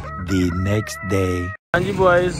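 Rooster crowing sound effect: one crow of about a second and a half that cuts off abruptly.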